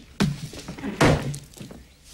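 Two heavy, hollow thunks about a second apart, the second the louder, with lighter knocks between them: a large plastic soda bottle knocked off a kitchen table.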